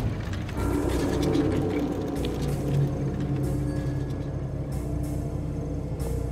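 Tense film score: a sustained low drone of held tones with a faint mechanical ticking texture, starting about half a second in after a loud hit.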